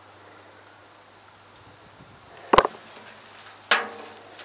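Hands working through potting soil in a wheelbarrow, a faint rustle over a low hum, with one sharp knock about two and a half seconds in and a short pitched sound, like a voice, near the end.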